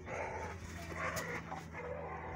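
A dog's voice: about three short calls in a row, over a steady low hum.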